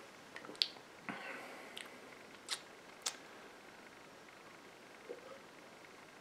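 Faint mouth sounds of drinking beer from a glass: a few short clicks and soft swallows in the first three seconds, then near quiet with a couple of small lip noises.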